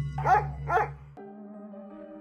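Two short dog barks, about half a second apart, over a music bed that stops about a second in and gives way to soft, sustained ambient music.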